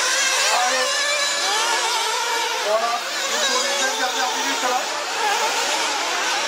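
Several 1/8-scale nitro off-road buggies racing, their small two-stroke glow engines giving overlapping high-pitched notes that rise and fall constantly as they accelerate and lift off.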